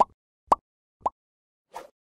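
Three short rising 'bloop' pop sound effects about half a second apart, then a faint brief rustle near the end: the pop sounds of an animated like-and-subscribe button overlay.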